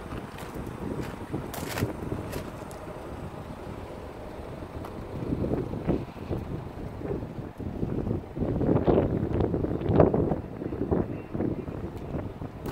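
Wind buffeting the microphone, gusting louder from about halfway, with a few crunching footsteps on gravel.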